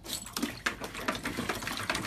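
A puppy pawing and wading in shallow water in a plastic paddling pool: quick, irregular splashing and sloshing.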